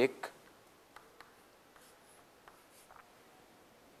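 Chalk writing on a chalkboard: a few faint, short strokes and taps as a letter Y is written and boxed.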